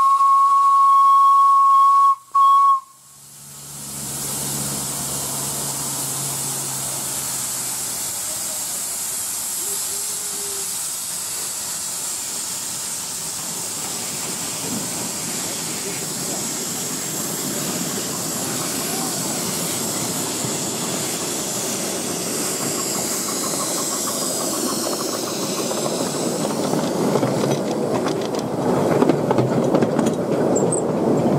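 Miniature steam locomotive, the 4-8-4 No.3 "Francis Henry Lloyd", sounding its whistle in one steady high tone of about three seconds with a brief break near the end, then a steady hiss of steam as it gets under way, with its cylinder drain cocks blowing steam around the wheels. The train's running sound grows louder near the end as the coaches come past close by.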